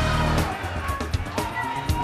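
Game-show background music with a low, steady bass and scattered light clicks; a steady high tone comes in about two-thirds of the way through.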